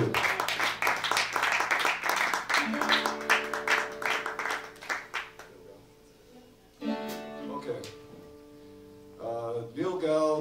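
Applause-like clatter dying away over the first five seconds while an acoustic guitar rings a held chord, then two more quiet strummed guitar chords, about seven and nine seconds in.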